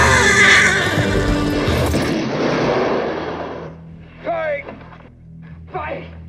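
Western film soundtrack: a horse whinnying over a loud din of music and action, which fades out after about three and a half seconds. Two short cries follow near the end.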